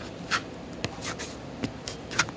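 Several short, scratchy rustles in quick succession, like paper or packaging being handled.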